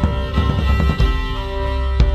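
Instrumental neofolk music: sustained tones over a deep, steady low drone, with a few soft struck notes.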